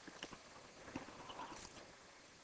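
Faint splashing and dripping of water as a tiger shifts in a concrete water trough, with a few soft knocks near the start and about a second in.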